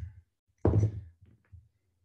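A screwdriver set down on a tabletop with a single sharp knock, followed by a few faint clicks of handling a small metal valve part.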